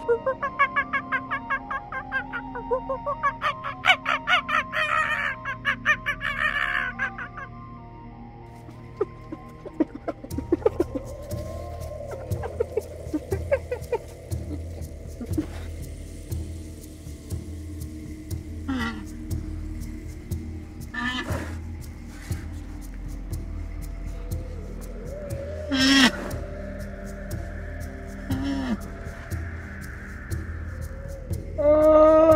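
Grey partridge calling: a fast run of harsh, evenly repeated notes over about the first seven seconds. Then a steadier low sound follows, with a few scattered calls and sharp clicks.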